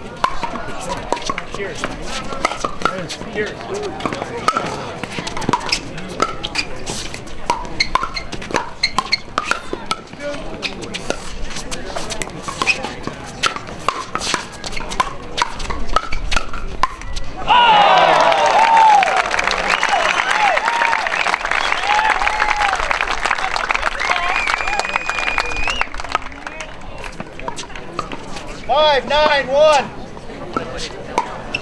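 Pickleball rally: repeated sharp pops of paddles hitting the plastic ball, over spectators' murmur. About 17 seconds in the point ends and the crowd cheers and claps for several seconds, and a voice calls out near the end.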